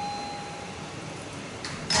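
A single steady tone, like a short beep, lasting just under a second, over steady room hiss.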